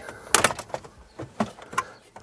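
Plastic centre dash trim surround of a VW T5 Transporter being prised off by hand, its retaining clips letting go with a series of sharp clicks, the loudest near the start.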